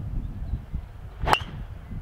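A golf driver striking a ball off the tee: a single sharp crack about a second and a quarter in.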